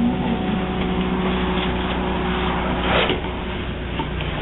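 Versa-Vac insulation removal vacuum running steadily, its large hose sucking up loose blown-in attic insulation: a constant low drone under a rushing of air and material, with a brief louder rush about three seconds in.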